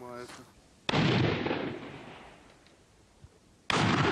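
Two shots from a magazine-fed shotgun, about three seconds apart, each a sharp report followed by a long fading echo.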